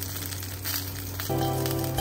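Hot cooking oil sizzling steadily as food fries, with background music coming in about a second and a half in.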